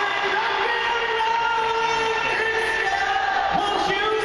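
Live concert sound from the audience: the band playing while many voices in the crowd sing and cheer, heard as a steady, dense mix of overlapping held notes.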